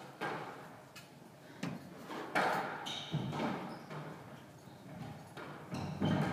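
Squash rally: the ball cracking off racquets and the court walls, a string of sharp hits a second or so apart, each with a short echo in the enclosed court; the loudest hit comes a little over two seconds in.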